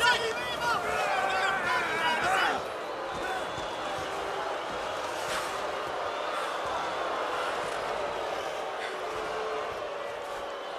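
Hockey arena crowd yelling with many overlapping voices, which drops after about two and a half seconds to a steadier, quieter crowd noise.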